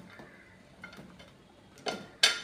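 A few faint ticks of a ceramic plate and fried taro slices being slid off it into a steel pot of simmering gravy, with a sharper click near the end.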